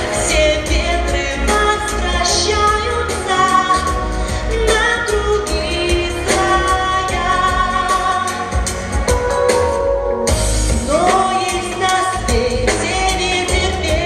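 Teenage girl singing solo into a handheld microphone over a recorded backing track with a steady beat, amplified through the hall's speakers. About eleven seconds in, her voice slides up into a held note.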